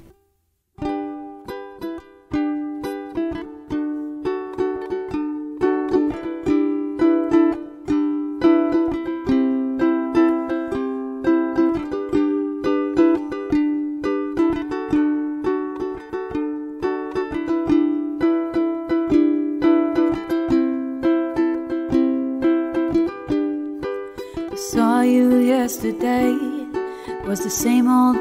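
Solo acoustic plucked-string instrument, most like a ukulele, playing the picked instrumental opening of a song as a steady run of notes with no low bass. A woman's singing voice comes in near the end.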